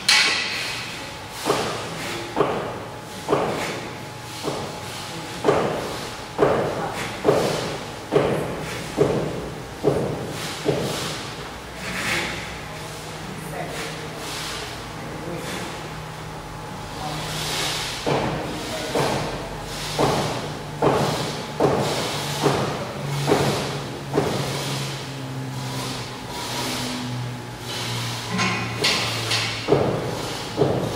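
Repeated sharp knocks with effort breaths, about one a second, each dying away, from an athlete doing reps hanging from the bar of a steel pull-up rig. The run pauses for several seconds in the middle and picks up again twice.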